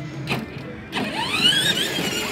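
The small electric drive motor of a battery-powered ride-on toy jeep runs with a low steady hum as the car moves, with a short noise near the start. From about a second in, high gliding pitched sounds join it.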